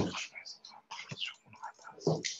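Quiet whispered or muttered speech in short, broken fragments.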